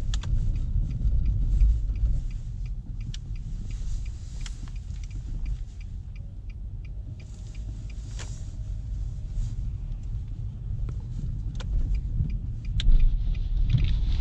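Cabin sound of a Nissan Juke's 1.6-litre four-cylinder engine and tyres rumbling at low speed, with a turn-signal indicator ticking about twice a second through the first half. The rumble grows louder near the end as the car pulls away.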